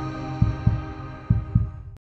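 Heartbeat sound effect: two double thumps, about one a second, over a held music drone that fades and cuts off at the end.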